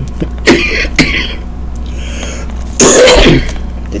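A person coughing and clearing the throat: short coughs about half a second and a second in, then a longer, louder cough bout about three seconds in, a smoker's cough while smoking a blunt.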